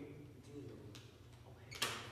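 Quiet room tone with a low steady hum, a few faint clicks, and one sharp knock near the end.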